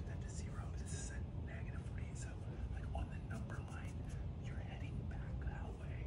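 Quiet whispered speech, in short broken phrases, over a steady low room hum.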